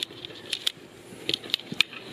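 A few light, sharp clicks and soft rustling from hands handling large plastic tubs filled with compost.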